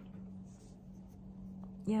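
A pause in a woman's talk: faint room tone with a steady low hum, and she says "yeah" near the end.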